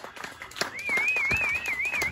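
Scattered hand clapping as a live band's song ends. In the second half a high, wavering whistle-like tone is held for over a second.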